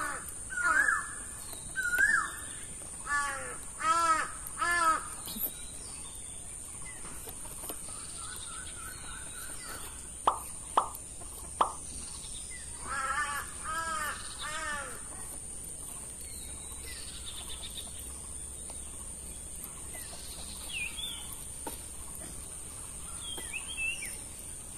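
Crows cawing in two bouts of repeated calls, near the start and again about halfway through, with three sharp clicks just before the second bout, over a steady high-pitched whine.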